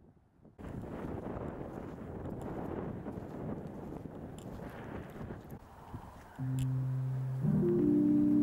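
Wind rushing over the microphone outdoors for several seconds. About six seconds in, background music enters with held low notes that swell louder near the end.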